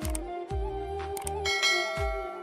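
Background music with a steady beat, over which a subscribe-button animation sound effect plays: clicks, then a bright bell chime about one and a half seconds in that rings on.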